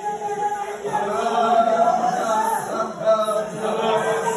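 Many people praying aloud at the same time, their voices overlapping into one continuous chant-like sound with no single words standing out.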